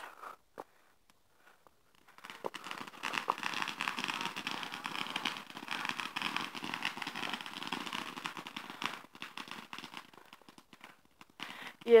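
Fireworks crackling: a dense run of rapid small pops that starts about two seconds in, lasts some seven seconds and dies away near the end.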